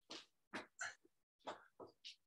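Faint, short, hard breaths of a person exerting themselves, a quick puff roughly every half second.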